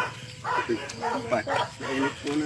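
An animal's short, repeated high cries, about four in two seconds.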